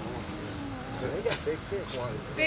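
Indistinct voices of a small gathered group talking quietly, over a steady low rumble, with a couple of faint clicks about a second in.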